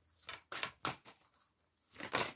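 A deck of oracle cards being shuffled by hand: about four short papery swishes within the first second or so.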